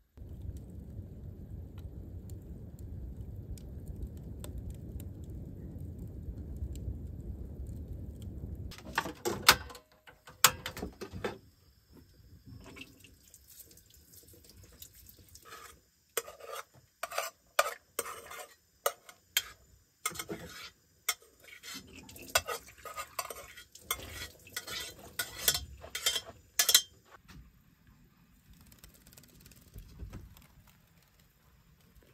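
A low, steady rumble of a wood fire burning in a brick stove's firebox. About nine seconds in it gives way to a utensil clattering and scraping against a frying pan of food on a portable gas burner, in sharp irregular knocks, with light sizzling between them.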